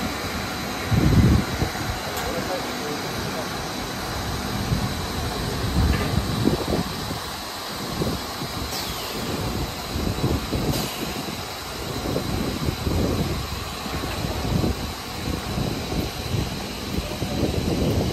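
PVC pipe extrusion line running: a steady mix of machine noise from the extruder, vacuum tank pumps and haul-off, with a thin constant high whine over it.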